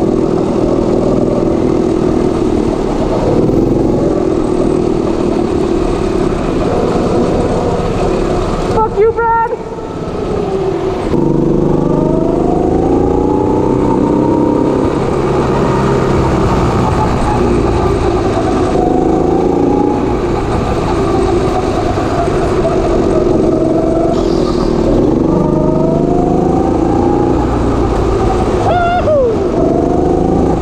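Go-kart engine running hard, its pitch rising and falling again and again as the kart accelerates and slows. There is a brief break in the sound about nine seconds in, and a sharp drop in pitch near the end.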